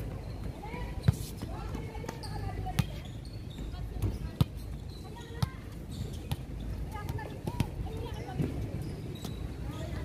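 A volleyball being hit during a rally: a string of sharp slaps a second or two apart through the first half, the loudest about a second in, then lighter taps, with players calling out.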